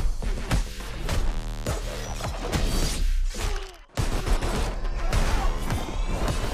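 Action-trailer score with a steady deep bass, cut through by repeated sharp impacts, booms and bursts of gunfire. About three and a half seconds in the sound drops out almost completely for a moment, then slams back with a hit.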